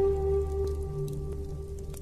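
Native American flute holding one long, steady note that fades away near the end, over a low drone, with a light rain-like patter of drops in the background.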